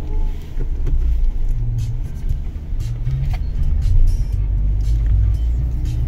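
Low, steady rumble of a Suzuki Swift's 1.3-litre four-cylinder petrol engine and road noise, heard from inside the cabin while driving.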